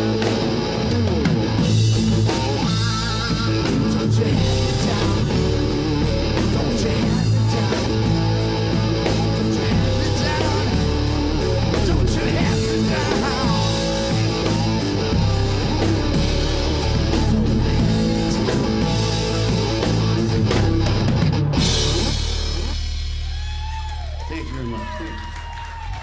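Live rock band playing an instrumental passage on electric guitar, bass and drum kit. Near the end the drums and cymbals stop and a held chord rings out, fading.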